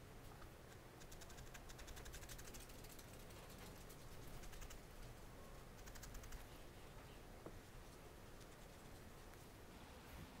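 A single felting needle stabbing quickly and repeatedly into wool fibres, making faint rapid ticks in several short spells as loose fur wool is needled onto the body of a miniature wool dog.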